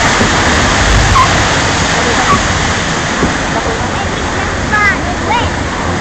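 Steady rush of flowing water in a log flume channel, heard from the boat riding on it.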